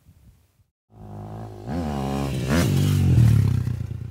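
Dirt bike engine revving hard as it accelerates, its pitch climbing, dropping and climbing again, starting about a second in. There is a brief sharp clatter about two and a half seconds in.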